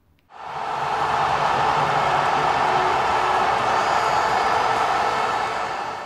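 A loud, steady rushing noise swells in just after the start, holds evenly, and begins to fade near the end.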